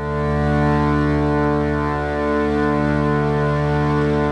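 A steady, low musical drone holding one pitch with many overtones, swelling in at the start and then sustained without change.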